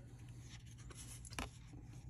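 Paper trading cards sliding and rubbing against one another as a card is moved from the front to the back of the stack, with one sharp flick of card stock about one and a half seconds in. A faint steady low hum runs underneath.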